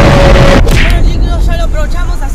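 Loud explosion sound effect with a deep rumble, cut off abruptly about half a second in. After it, from about a second in, comes a quick warbling voice-like sound.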